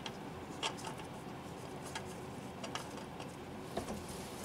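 Oil filter being spun off its housing by hand, with a few faint clicks and light taps over a steady low hiss.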